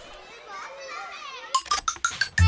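Children's voices chattering faintly, then a quick run of sharp, loud clicks near the end.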